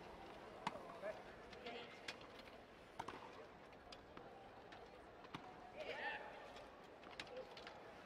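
Tennis ball being hit by rackets and bouncing on a hard court during a rally: sharp, separate pops a second or two apart over a faint crowd hum, with a short burst of voices about six seconds in.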